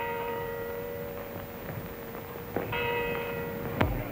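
Bells ringing: one ringing chord right at the start and another about two and a half seconds later, each held for about a second and then fading, with a sharp knock just before the end.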